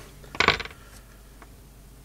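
A small metal hand tool set down on a wooden desk: a brief clink about half a second in, then a faint tick a second later.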